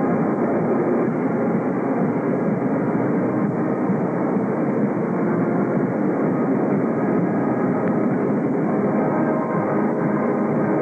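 Marching band playing, heard as a dense, steady and muffled wash of held brass tones and drums through a low-quality recording that has lost its high end.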